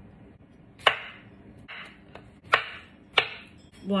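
Chef's knife cutting a cucumber on a wooden cutting board: about five separate sharp knocks of the blade reaching the board, unevenly spaced, the first, about a second in, the loudest.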